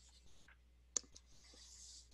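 A sharp computer click about a second in, with a fainter one just after, as the slide is advanced. Otherwise near silence.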